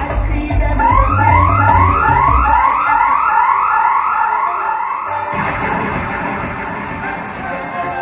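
Dub sound-system music with a siren-like effect sweeping upward over and over, about two or three sweeps a second. The bass drops out for a few seconds under the sweeps, then comes back in.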